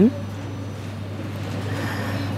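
A woman's short rising "Hmm?" at the start, then the steady low hum of a supermarket hall's background, likely its refrigerated display cases and ventilation.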